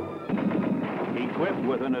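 Rapid gunfire in a quick run of sharp shots, with a spoken voice coming in near the end.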